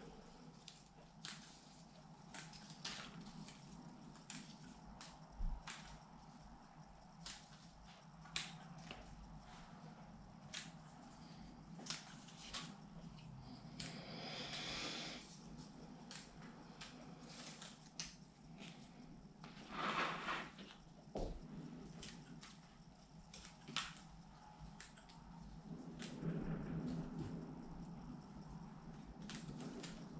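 Small bonsai scissors snipping leaves off a lemon tree one at a time, leaving a bit of leaf stalk: faint, sharp clicks roughly once a second. The leaves rustle twice, briefly.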